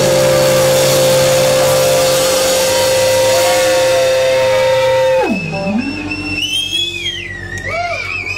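Electric guitar feedback ringing out at the end of a live rock song: one loud steady held tone for about five seconds. It then swoops down and back up and gives way to quieter warbling, gliding tones.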